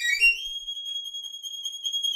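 Solo violin sliding up to a very high, thin note and holding it steadily, then starting a descending run right at the end.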